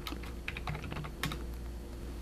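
Typing on a computer keyboard: a quick, irregular run of light key clicks, as a stock code is entered to call up a chart.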